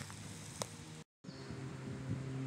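Faint outdoor background noise that drops out completely for a moment about a second in, where the recording is cut. After the cut a faint steady low hum comes in.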